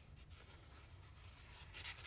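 Near silence: a low steady hum with faint rustling, and a slightly louder scratchy rustle near the end.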